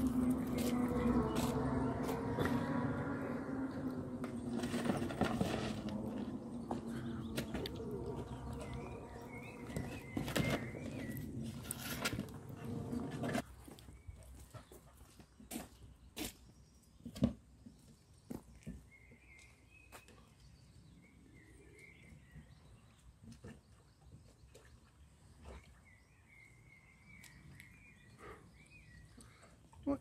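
A steady drone with several held pitches runs for about the first thirteen seconds, then stops abruptly. After it, small birds chirp faintly now and then, with scattered light clicks and knocks.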